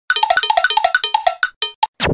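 A playful intro jingle of short, bright pitched notes played fast, about eight a second, in a repeating falling three-note figure. The notes thin out and stop near the end.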